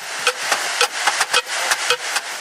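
Hand percussion played by a group: sharp strikes at an uneven rhythm, several a second, over a steady hissing wash.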